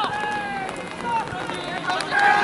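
Voices shouting calls across a football pitch during open play: drawn-out, held shouts rather than conversation.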